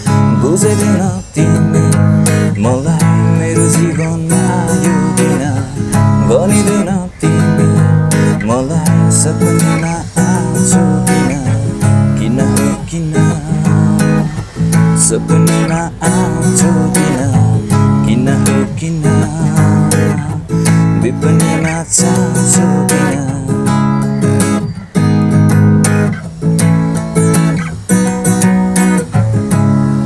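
Steel-string acoustic guitar strummed in a steady rhythm, with a man singing along.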